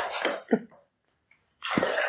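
Breathy exhales from a person close to the microphone, fading out within the first half second. After about a second of silence comes a sharper breathy burst near the end.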